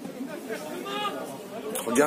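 Indistinct voices talking, with one raised voice about a second in; a man starts speaking close up near the end.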